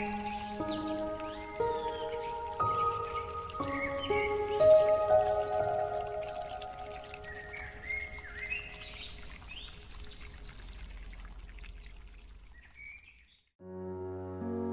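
Slow, soft piano melody of single notes over a bed of birdsong chirps, gradually fading out until it is almost silent about thirteen seconds in. Just before the end, a new piano piece begins, louder and fuller.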